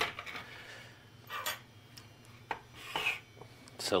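Hands handling the plastic parts of a disassembled CD changer on a workbench: scattered light clicks, and two short rubbing scrapes, about a second and a half in and about three seconds in.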